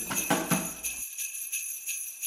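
Jingle bells shaken in an even rhythm, about four shakes a second. The fuller music and voices beneath them stop abruptly about a second in, leaving the bells alone.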